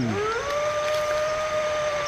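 A person's voice making one long, high, steady hoot. It slides up at the start, is held at one pitch for over a second, then fades near the end.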